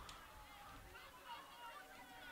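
Near silence, with faint distant voices calling and talking.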